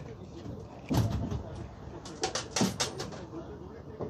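Idling city bus at a stop while a passenger boards: a heavy thump about a second in, then a quick run of clicks and knocks, over a low steady rumble and faint voices.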